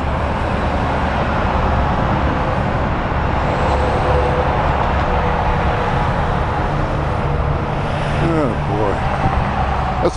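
Steady traffic noise from a busy multi-lane road below, a dense mix of tyre and engine sound with a strong low rumble.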